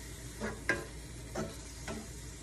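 Wooden spatula stirring a mixture in a frying pan on the stove, with about four sharp scrapes or knocks of the spatula against the pan over a low, steady frying sizzle.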